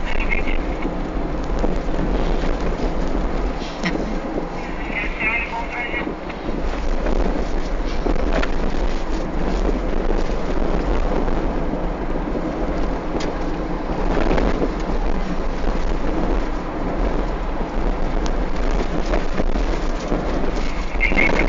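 Steady rushing road and wind noise inside a moving Chevrolet Cobalt sedan, with a few brief high-pitched chattering sounds near the start and about five seconds in.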